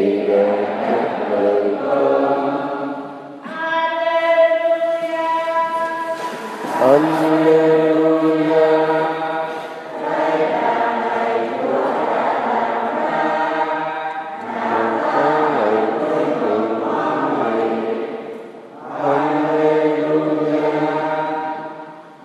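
Choir singing a slow hymn with long held notes, in phrases a few seconds long separated by short breaks.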